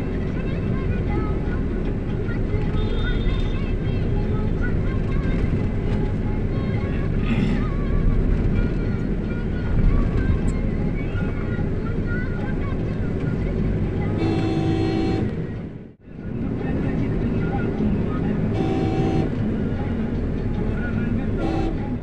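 Steady low rumble of traffic and road noise heard from a moving vehicle, with two horn honks of about a second each in the second half. The sound drops out briefly between the two honks.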